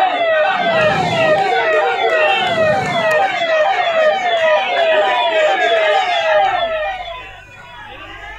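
Emergency vehicle siren sounding in fast, repeating falling sweeps, a little over two a second, with crowd voices underneath; the siren fades out near the end.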